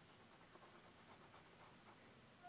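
Faint scratching of a graphite pencil on drawing paper, a quick run of back-and-forth shading strokes.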